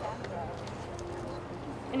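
Faint murmur of voices in a small group, with a few light clicks over a steady low hum.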